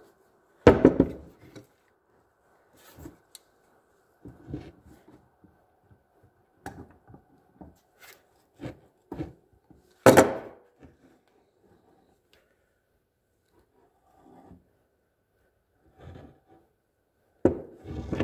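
An ATV lower control arm, its bushings and its pivot shaft being handled on a workbench: scattered light clicks and clunks of metal parts and tools. There are two louder knocks, about a second in and about ten seconds in.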